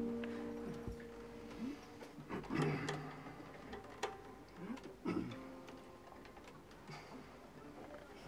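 A chord on a nylon-string classical guitar rings on and fades away. It is followed by scattered small clicks and knocks from instrument handling in a quiet room.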